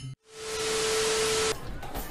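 A loud burst of static-like hiss with a steady mid-pitched tone under it. It fades in within a fraction of a second, holds evenly for about a second, then cuts off abruptly. It is an edited-in sound effect, not part of the scene.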